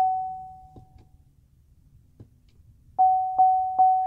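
GMC dashboard warning chime: a single-pitched ding repeating about two and a half times a second. It fades out about a second in, then starts again about three seconds in.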